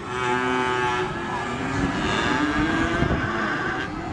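A cow mooing in one long, drawn-out moo.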